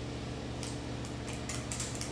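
Faint, light clicks and taps from kitchen utensils being handled, several spaced irregularly, over a steady low hum in the room.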